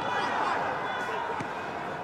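Rugby stadium crowd ambience: a steady murmur of the crowd and field noise.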